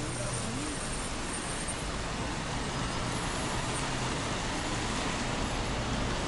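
Steady city street traffic noise: cars moving on wet pavement, with no single vehicle standing out.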